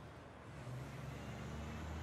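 A low, steady rumble like a motor vehicle's engine, swelling and easing slightly.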